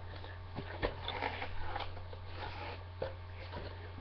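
Hands handling a cardboard box: soft rustling and scraping with a few light knocks, over a steady low electrical hum.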